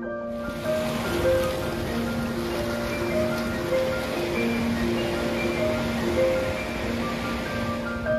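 Ocean surf washing over a sandstone rock shelf, a steady rush that starts just after the beginning and stops abruptly at the end, under background music with a slow, gentle melody.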